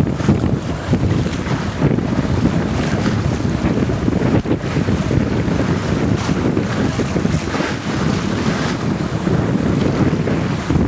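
Wind buffeting the microphone in uneven gusts, with water rushing along the hull of a sailing boat under way.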